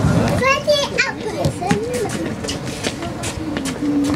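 Spectators' voices, with a high child's voice calling out about half a second in and other voices murmuring after it, over scattered sharp slaps of footballs being kicked and caught in goalkeeper gloves.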